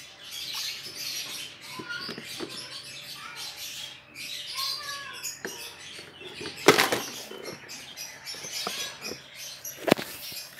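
Scratchy rustling and small clicks of light plastic containers being handled and tipped, with a sharp plastic knock about two-thirds of the way through and another click near the end.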